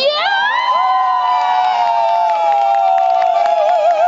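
Spectators cheering with long, high-pitched screams that rise at once and are held for over three seconds, two or more voices together, wavering near the end, with a little clapping.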